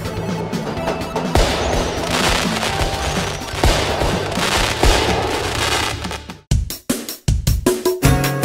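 Cartoon soundtrack: background music under a loud, noisy sound effect with a few hits, which breaks up into short choppy pieces with gaps near the end.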